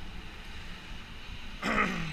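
A man clears his throat once, briefly, near the end, over a steady low background rumble.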